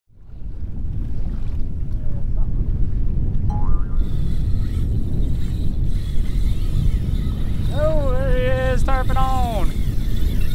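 Wind buffeting the microphone over open water, a steady low rumble. About eight seconds in, a drawn-out pitched call wavers for about two seconds.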